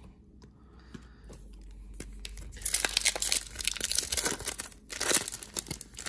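Foil wrapper of a 2019 Topps Chrome Update baseball card pack torn open and crinkled by hand, a dense crackling that starts about two and a half seconds in and runs for about three seconds.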